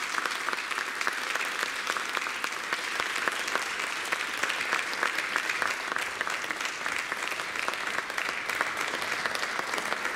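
Audience applauding steadily at the end of a performance.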